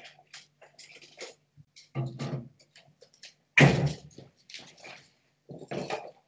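Bottles and shelves handled in a refrigerator, a series of short clicks and knocks, then a loud thud a little past halfway as the fridge door is shut, followed by lighter knocks as a wooden stool takes someone's weight.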